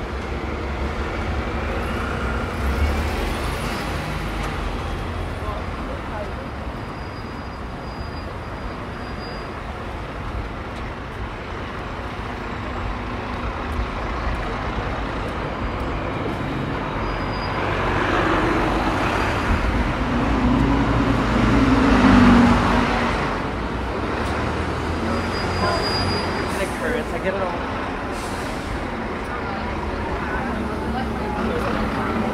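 Busy city street traffic: buses and cars running in the road beside the pavement, a steady rumble that grows louder for a few seconds about two-thirds of the way through as heavier traffic passes close by.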